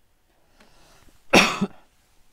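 A man coughs once, briefly, about a second and a half in, after a faint breath.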